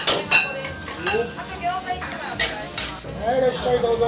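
Metal ladle scraping and clacking against a wok as fried rice is stir-fried, with the rice sizzling in the hot oil. The ladle strikes come irregularly, several in the first half.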